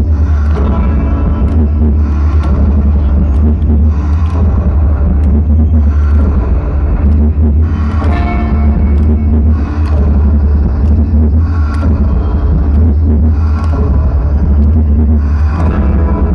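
Gothic metal band playing live through a festival PA: electric guitars, bass and drums in a slow, heavy groove, with a pattern that comes round about every two seconds. The bass is very strong, as picked up from the crowd.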